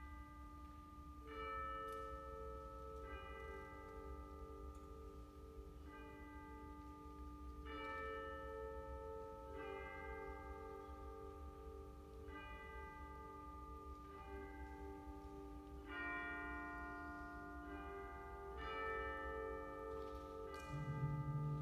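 Bell-like tuned percussion playing a slow, soft run of single struck notes, one every one to three seconds, each ringing on and overlapping the next, in a reverberant concert hall.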